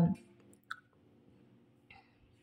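A single short click about two-thirds of a second in, in an otherwise quiet pause, with a fainter brief sound just before the end.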